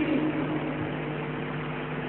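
Steady low hum over a hiss, in a pause between recited Quran verses. The reciter's long, wavering note cuts off just as it begins.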